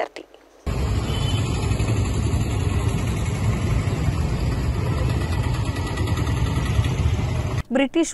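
Steady low rumbling background noise of a roadside, with no voices in it. It starts abruptly about half a second in and cuts off shortly before the end.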